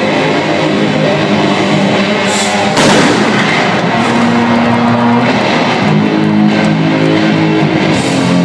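Live heavy rock electric guitar solo through a concert PA, with long held distorted notes. A single loud crash rings out about three seconds in.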